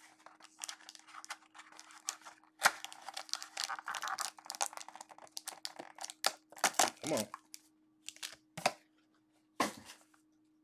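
Plastic card-pack wrapping crinkling and tearing as a box of trading cards is opened and the pack handled. A dense run of crackling fills the middle few seconds, followed by a few separate sharp crinkles, over a faint steady hum.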